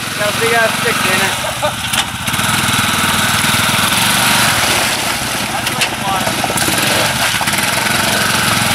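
Honda ATV's single-cylinder engine running under load as the quad drives through deep mud, picking up revs about two seconds in and staying up.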